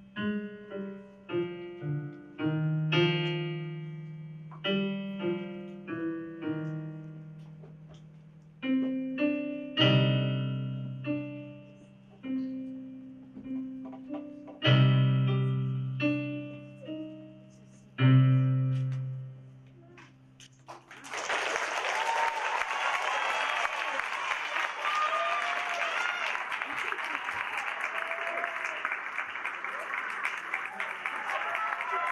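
Digital keyboard in a piano voice playing a slow piece: single notes and chords, each struck and left to ring out on the sustain pedal, the last chord fading about 20 seconds in. Then audience applause with cheering.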